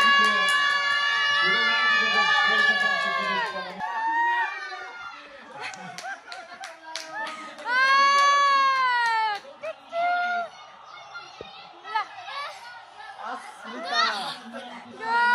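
A high-pitched shout held at one pitch for about four seconds, then a few hand claps, then a second, shorter rising-and-falling shriek a few seconds later. The voices are children's, cheering at a televised football match.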